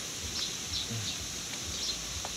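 Pondside outdoor ambience: a steady high hum of insects with a few short, faint bird chirps.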